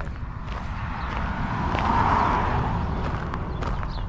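Vehicle rolling slowly over a gravel road: tyres crunching on the stones over a steady low rumble, the crunching swelling and peaking about two seconds in.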